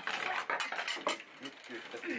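A stainless steel bowl clattering and scraping as it is handled, with many quick metallic strokes in the first second, then dying away.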